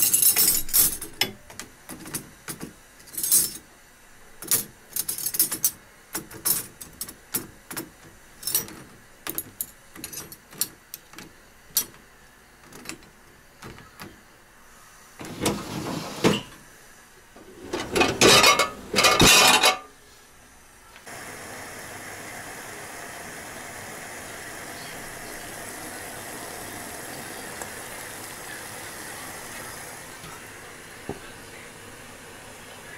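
Metal cutlery clinking in many small clicks as forks and spoons are dropped into a dishwasher's cutlery rack. Then comes louder clattering as the rack is pushed in and the door is closed. From about two-thirds of the way through, a steady even hiss takes over.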